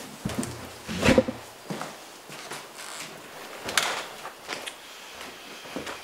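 People walking into a room: scattered footsteps, soft knocks and rustles, with the loudest knock about a second in.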